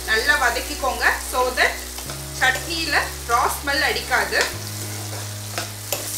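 A metal spatula stirring chopped capsicum and green chillies in a nonstick pan as they sauté in sizzling oil. The spatula scrapes the pan in quick strokes, about two to three a second.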